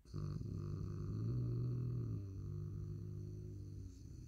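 A man's low, drawn-out hum, a closed-mouth 'mmm' held for nearly four seconds, starting suddenly and rising slightly in pitch in the middle.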